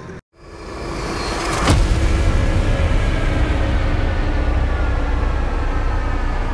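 A motor vehicle's engine running steadily with a low rumble, fading in after a brief silence and holding at an even pitch, with one sharp knock a little under two seconds in.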